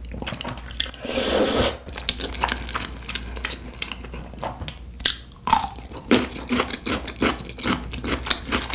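Close-miked eating: wet chewing and smacking mouth clicks, irregular and continuous, with a louder slurp about a second in.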